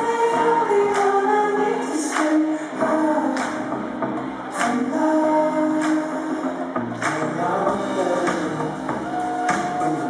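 A live rock band playing a song: electric guitars and sustained chords over a drum beat, with a sharp drum hit about once a second.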